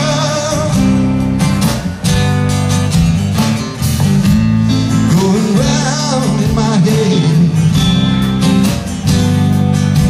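Live blues-rock band playing: a three-string fretless bass guitar, acoustic and electric guitars and drums. About halfway through, a bending, wavering melody line rises above the steady bass and chords.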